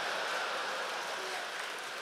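Congregation applauding in response to the preacher's joke, a steady patter that slowly eases off.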